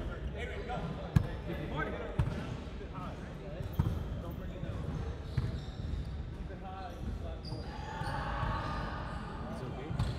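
A basketball bouncing a few times on a hardwood gym floor, single thuds at uneven gaps over the first half, echoing in a large hall. Faint voices of players talk in the background.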